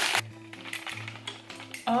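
Quiet background music with a low pulsing beat and a few faint clicks from handling the knife box, after a burst of rustling plastic packaging that cuts off just after the start. A woman's voice comes in at the very end.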